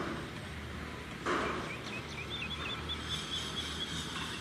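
Outdoor ambience with small birds chirping: a run of short, high, repeated chirps starts about two seconds in. A brief rush of noise comes just over a second in.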